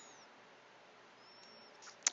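Near silence: faint steady background hiss, with two faint, brief high-pitched chirps, one at the very start and one about one and a half seconds in.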